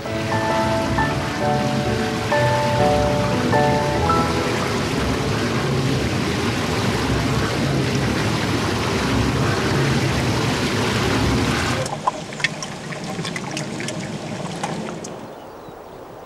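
Water rushing and splashing through the turning water wheel that drives the towing ropes of the canal's boat-haulage ramp, with a few held music notes over it in the first four seconds. About twelve seconds in the water sound drops away, leaving quieter outdoor ambience with a few clicks.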